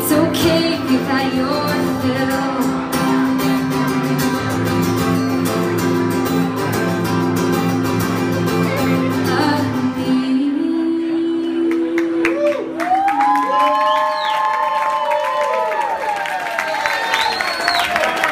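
A woman singing live to her own acoustic guitar. About ten seconds in the guitar stops and she holds a final note, then the audience cheers and whoops as the song ends.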